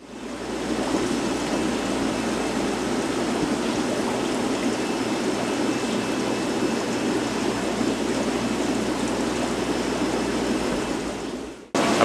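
Air bubbling up through aquarium sponge filters: a steady rush of bubbling water over a low, even hum. It cuts off suddenly just before the end.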